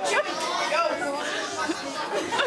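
Overlapping chatter of several people's voices in a large room, with no single speaker standing out.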